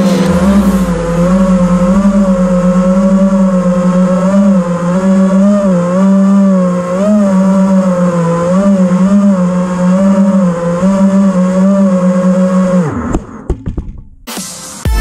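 FPV quadcopter's iFlight Xing brushless motors whining steadily, the pitch wavering slightly with throttle, then falling and spinning down near the end as the drone lands.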